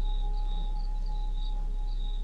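Cricket-like chirping, a few short high chirps a second, over a steady thin tone and a deep low drone: the ambient backdrop of an electronic track between spoken samples.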